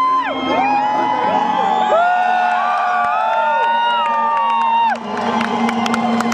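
Arena concert crowd cheering and whooping: many voices overlap in long calls that rise and fall, over a steady low held note. About five seconds in the calls die away and scattered sharp clicks follow.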